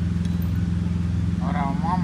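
Steady low mechanical drone with a fine pulsing texture, from a running engine or motor in the workshop. A man's voice starts speaking near the end.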